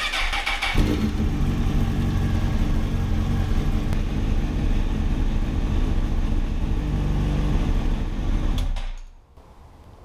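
2005 Honda CBR1000RR's inline-four engine is cranked by the starter and catches within the first second. It then idles steadily until it is switched off about nine seconds in.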